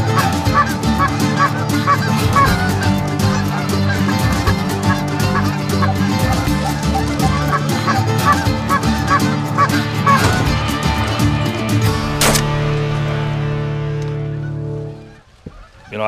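A flock of wild geese honking continuously as they fly over, many overlapping calls, fading out near the end.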